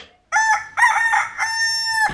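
Rooster crowing once, cock-a-doodle-doo: a few short notes and then a long held final note, the usual sound cue for morning and waking up.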